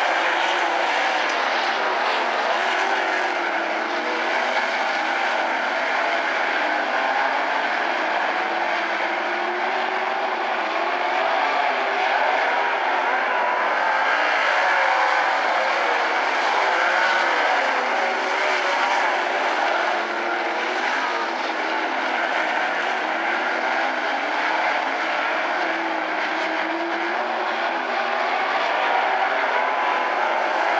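A pack of 360 sprint cars, 360-cubic-inch V8 racing engines, running at race speed on a dirt oval. Several engines sound at once, their notes rising and falling continuously as the cars lap.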